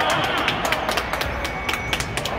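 Children's sneakers running on a hardwood gym floor: many quick, irregular footfalls that echo in the large hall, over a background of spectator chatter.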